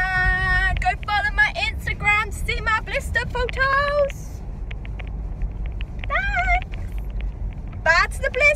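Steady low rumble of road and engine noise inside a moving car. A girl's voice is vocalising over it for about the first four seconds and briefly again about six seconds in, with a few small clicks in the gap.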